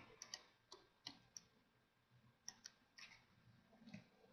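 Near silence with faint, scattered computer mouse clicks, about nine in four seconds.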